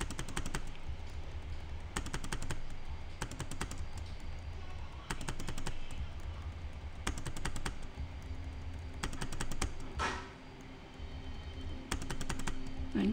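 Computer keyboard typing: short runs of quick key clicks, with pauses of a second or two between runs, as lines of code are re-indented.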